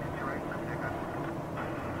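Steady noise of jet airliner engines, growing a little brighter in tone about one and a half seconds in.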